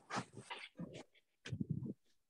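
A dog whimpering in a few short bursts, picked up by a video-call participant's microphone.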